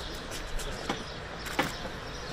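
Steady outdoor city background noise, with two short sharp sounds, the second and louder one near the end.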